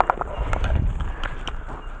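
Handling noise from fingers rubbing and tapping on a handheld camera close to its microphone: a string of irregular clicks and knocks over a low rumble, loudest at the very start.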